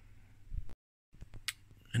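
A few faint knocks and clicks of handling noise on a workbench, broken by a moment of complete dead silence at an edit cut, with one sharper click about a second and a half in.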